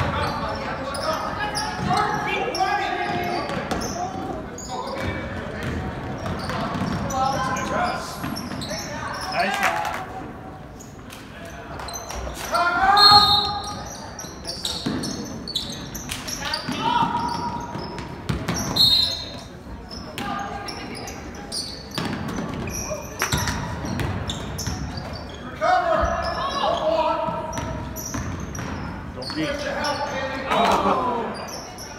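Basketball being dribbled on a hardwood gym floor, with indistinct voices calling out in the echoing hall.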